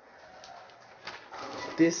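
Newspaper pages rustling and crinkling as the paper is picked up and held open, starting about a second in, then a spoken word.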